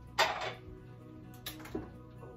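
Dishes and baby-bottle parts being handled and set down: one sharp clack a fifth of a second in, the loudest sound, then two lighter knocks near the end, over steady background music.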